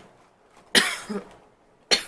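A woman coughing twice, about a second apart, the first cough the louder; she is still sick.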